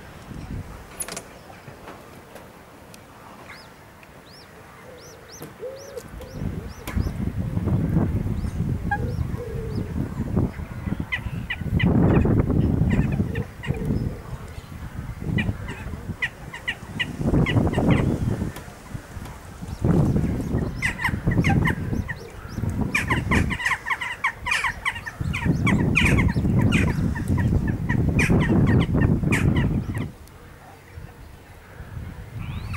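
Eurasian coot chicks calling: runs of short, high, repeated peeps in several bouts while being fed by the adults. A heavy low rumble runs underneath through most of the calling.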